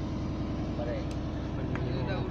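A fishing boat's engine running with a steady low hum, with men's voices faint over it.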